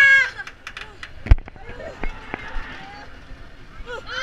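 A rider's high shout on a moving roller coaster trails off, followed by a few sharp clicks and one loud knock about a second in. Then an even rush, like wind on the microphone, until the riders' voices return.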